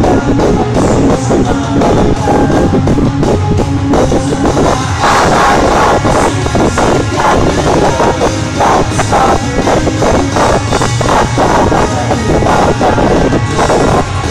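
Live rock band playing loud through an arena sound system: electric guitars and drum kit in a steady beat, heard from within the crowd.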